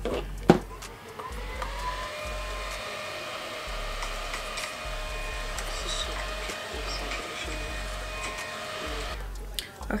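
Small battery-powered handheld fan running, its motor whine rising in pitch over the first second or two, then holding steady while it dries freshly sprayed setting spray on the face, and stopping shortly before the end. A sharp click about half a second in.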